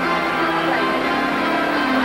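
Music with many sustained, overlapping bell-like ringing tones, at a steady level.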